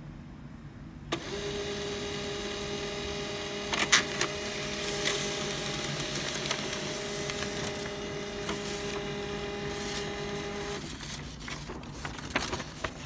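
HP LaserJet M15w laser printer printing a configuration page. Its motor starts about a second in with a steady whine, gives sharp clicks about four and five seconds in, and stops shortly before the end, followed by a few light clicks.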